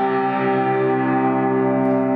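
A chord on an upright piano held with the sustain pedal, ringing on and slowly fading after the hands lift off the keys at the end of the piece.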